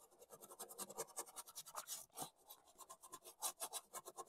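A small artist's brush scrubbing quickly over a plastic stencil, working adhesive through its cut-outs: faint, rapid scratchy strokes, many a second.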